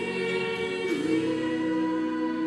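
A small group of women singing in harmony, holding long notes, with a short slide up in pitch about a second in into a chord that is held from then on.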